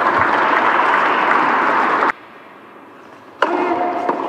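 Audience applauding, cutting off abruptly about two seconds in. After a short lull, one sharp knock of a tennis ball near the end.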